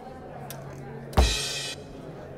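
ddrum DD1 Plus electronic drum kit: a kick drum and crash cymbal sample struck together about a second in. The cymbal's ring cuts off abruptly about half a second later as the cymbal pad is choked. A faint tap comes just before.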